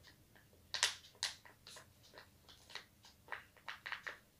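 A pen writing on paper: about a dozen short, irregular strokes, the loudest about a second in.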